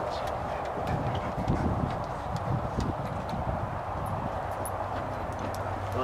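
A steady low machine hum with a haze of noise, broken by scattered light clicks and knocks.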